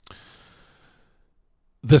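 A man's short breath out near the microphone, lasting about half a second, then quiet until he starts speaking near the end.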